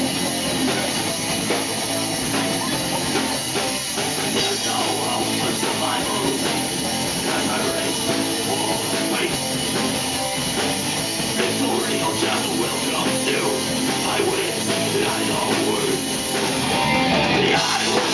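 Live heavy rock band playing an instrumental passage: electric guitar, bass guitar and drum kit, with no singing. The playing grows a little louder near the end.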